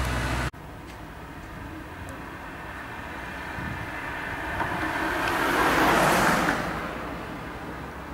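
A low engine hum from inside a moving vehicle stops abruptly about half a second in. It gives way to outdoor traffic noise in which a passing vehicle swells to a peak about six seconds in and then fades.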